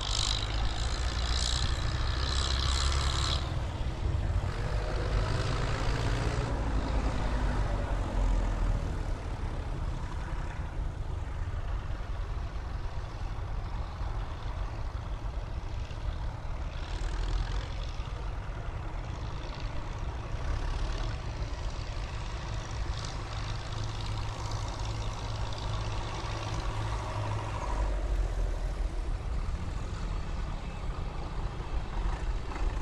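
Engines of a line of tractors running as they drive past one after another, a steady low engine sound throughout. One engine note falls in pitch a few seconds in.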